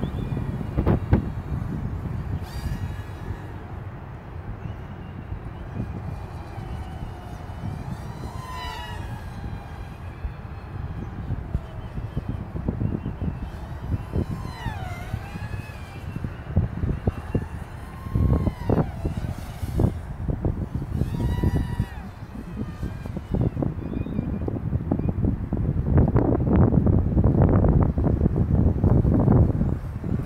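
Wind buffeting an outdoor microphone as a low, uneven rumble that grows loudest near the end. A few short gliding whistles sound over it.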